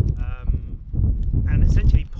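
A man talking with wind rumbling on the microphone. A short call at one steady pitch sounds about a quarter of a second in.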